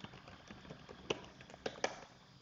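Computer keyboard keys tapped a handful of times, sharp separate clicks spread unevenly, the loudest about a second in and near the end: a short password being typed and entered.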